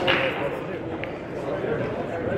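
Murmur of voices in a large hall, with a brief hiss at the start and a single short click about a second in.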